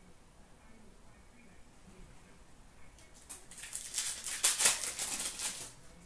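O-Pee-Chee Platinum hockey cards being handled and flicked through in the hand. After about three seconds of low room tone comes a quick run of sharp papery clicks and rustles lasting about two and a half seconds.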